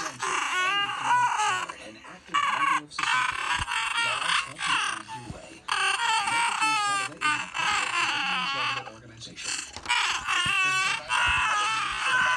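A person's high-pitched, wavering voice in repeated bursts of a second or two, with no clear words.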